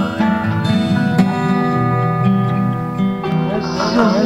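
Acoustic music on a plucked acoustic guitar, with notes ringing on and a sharp plucked attack about a second in.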